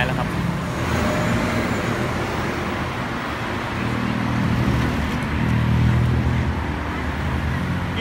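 City road traffic: car engines running and passing, a steady low hum under a broad rush of traffic noise, swelling a little around the middle.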